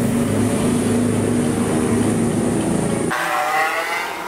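Honda Supra GTR motorcycle engine idling steadily. About three seconds in the engine sound cuts off suddenly and a brief higher-pitched tone takes over.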